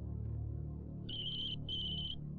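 Mobile phone keypad beeps: two short, high, even-pitched beeps in quick succession about a second in, over a low, steady musical drone.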